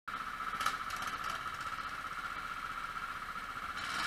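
Go-kart engines idling while the karts wait in line in the pit lane, a steady running sound with a small knock about two-thirds of a second in.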